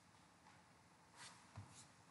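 Near silence: faint room tone with two brief soft rustles and a small low knock between them in the second half.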